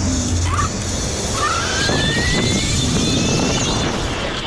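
Electric scooter's motor whining as the scooter rides away, the whine rising steadily in pitch from about a second in as it speeds up, over steady wind rumble on the microphone.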